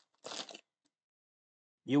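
A small clear plastic parts bag crinkling briefly as it is opened, about half a second in.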